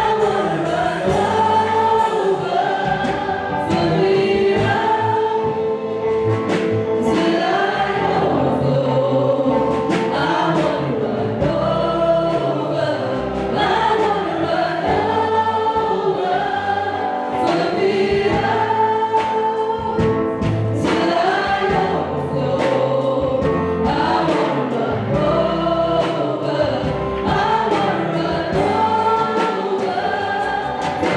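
A gospel worship song sung by a small group of amplified singers, with electric guitar and band accompaniment.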